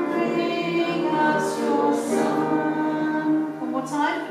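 Amateur choir rehearsing a Christmas carol, singing held notes throughout, with short sharp 's'-like consonants about a second and a half and two seconds in.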